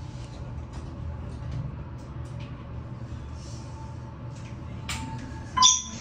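Otis traction elevator car descending: a steady low hum of the car in motion, then a short, loud electronic chime near the end as it reaches a floor.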